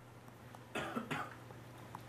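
A short cough about a second in, over a steady low hum.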